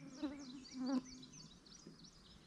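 A flying insect buzzing close by, its pitch wavering, loudest in two short passes during the first second. Thin, high bird chirps sound behind it.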